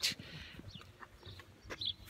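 Quiet outdoor background with a few faint, short bird chirps, the clearest near the end.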